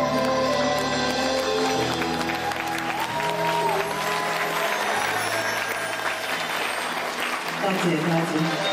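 A live band and singer end a song on held notes, and about two seconds in audience applause starts, with the band still playing underneath.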